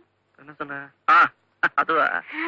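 Short bursts of a person's voice with brief silent gaps between them, the loudest about a second in.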